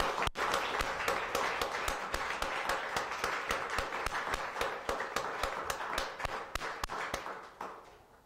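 Audience applause, many hands clapping together with a few louder single claps standing out; it dies away near the end.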